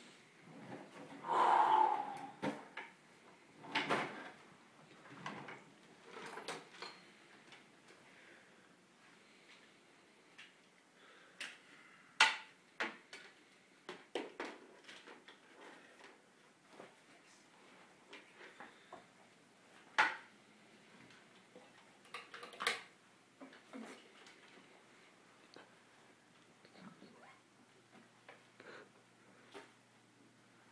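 A small microphone being swallowed on its cable: scattered throat noises, gulps and gagging, with irregular sharp clicks and knocks from the microphone and its cable. The loudest noise comes near the start, and sharp clicks recur a few times later.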